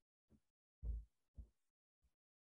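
Three short, soft low thumps picked up by a microphone, the second, about a second in, the loudest, with dead silence between them.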